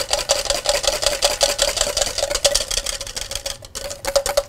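Wire whisk beating egg yolks by hand in a stainless steel bowl: fast, even clicking of the wires against the metal, with the bowl ringing on a steady tone. It stops shortly before the end.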